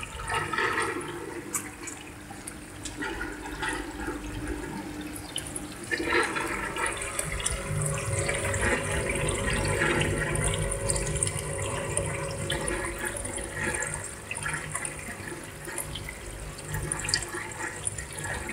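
Water running and gurgling in an aquaponics fish tank, getting louder about six seconds in.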